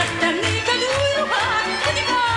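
A woman singing a Gypsy song (cigánydal) with sweeping, ornamented slides in pitch, accompanied by a violin and a band that keeps a steady low beat about twice a second.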